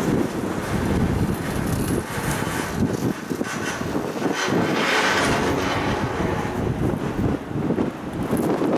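Wind buffeting the microphone of a camera riding an open chairlift: an uneven, gusty rumble, with a brighter hiss about halfway through.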